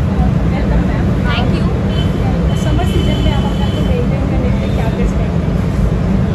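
Loud, steady low rumble of street noise, with faint voices above it. A thin high tone sounds about two seconds in and lasts a second or so.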